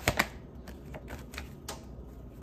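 Tarot deck being shuffled by hand, the cards clicking and slapping against each other: a quick run of sharp clicks at the start, then irregular softer clicks a few tenths of a second apart.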